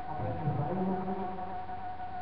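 A steady high buzzing hum with a voice over it, the voice drawn out on held notes in places.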